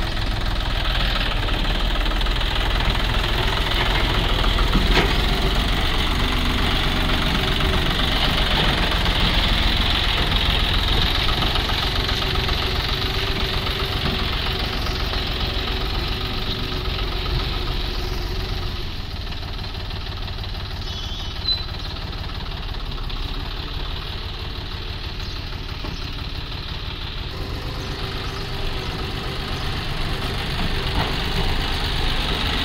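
John Deere 5050E tractor's three-cylinder diesel engine running steadily while its front dozer blade levels soil. The engine note drops a little about two-thirds of the way through, with one short click a couple of seconds later.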